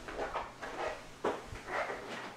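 Footsteps walking away, about two steps a second.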